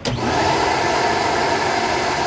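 Flow bench vacuum motors switch on abruptly and run steadily, pulling a loud rush of air through a straight runner of an Edelbrock RPM Air-Gap intake manifold while the bench comes up to test flow of about 257 CFM.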